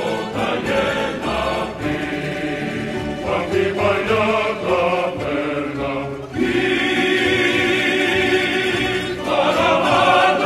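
Greek kantada, an old-Athens serenade: a group of voices singing in harmony with accompaniment, holding one long chord for about three seconds near the middle before the melody moves on again.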